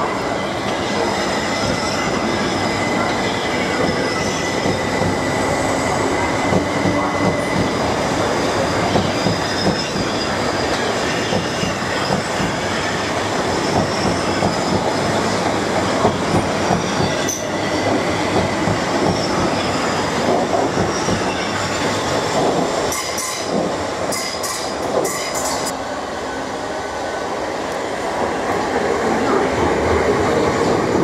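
A Class 375 Electrostar electric multiple unit running past along the platform, its wheels rumbling and clicking over the rails. A thin, steady wheel squeal runs for the first several seconds, and a cluster of sharp clicks comes about three-quarters of the way through.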